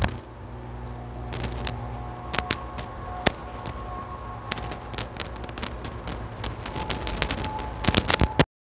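Scattered small clicks and knocks of a hand-held phone being handled and turned, over a steady low hum.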